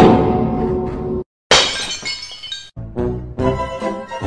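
Edited-in music and sound effects. A sudden loud hit rings for about a second and cuts off sharply. After a short gap comes a bright crash, and light music with quick notes starts about three seconds in.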